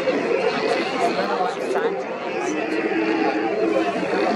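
A hauled-out colony of Steller sea lions calling all at once: a steady din of many overlapping low growls.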